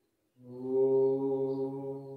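A person chanting a mantra: one long note held on a single steady low pitch, starting about a third of a second in.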